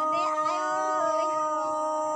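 A singer's voice holding one long, nearly level note with a slight waver about a second in, in an unaccompanied folk-song style.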